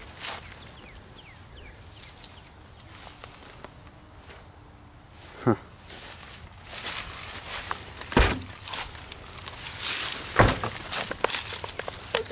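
Footsteps rustling and crunching through dry grass and brush. There are three sharp snaps or knocks, about 5.5, 8 and 10.5 seconds in.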